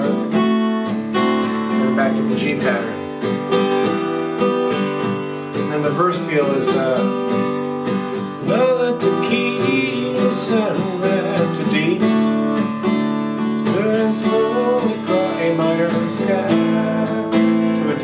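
Steel-string acoustic guitar strummed in an easy, steady pattern in the key of G, rocking back and forth between G and G6 and moving on to A minor and D7.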